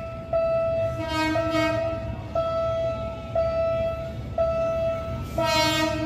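A level-crossing warning signal sounding a steady tone that breaks off briefly about once a second, with two short train horn blasts, about a second in and near the end, from an approaching diesel locomotive.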